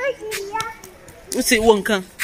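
A young child's voice, two short bursts of chatter.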